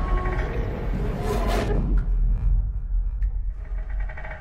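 Dark cinematic sound design: a deep steady rumble under a rushing swell that cuts away about two seconds in, leaving the low rumble with a few faint ticks.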